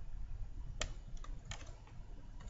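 Computer keyboard typing: a short run of irregular key clicks starting about a second in, over a low steady background hum.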